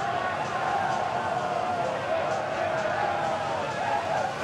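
A group of footballers shouting and singing together in celebration, as one continuous wavering chant over general commotion.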